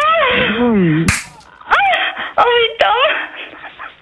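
Voices making wordless, exaggerated moaning sounds that slide up and down in pitch, with a sharp smack about a second in and a few lighter clicks.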